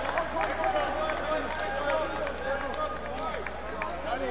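Athletic shoes squeaking on an indoor court floor as players move: many short, overlapping chirps that rise and fall in pitch, with scattered light taps of footfalls.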